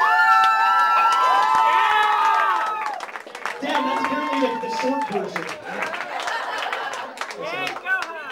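Several overlapping voices holding long notes for about three seconds, then a man talking through a karaoke microphone over bar crowd noise and scattered clapping.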